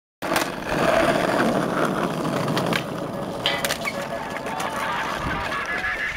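Skateboard wheels rolling on concrete, with several sharp clacks of the board striking the ground.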